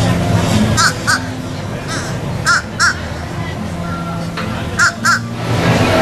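A bird calling in short, harsh notes that come in pairs, three times, over a steady bed of background music and voices.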